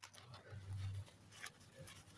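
Faint rustling and a few sharp crinkles of white paper wrapping being pulled off a small ball cactus by hand, over a low hum.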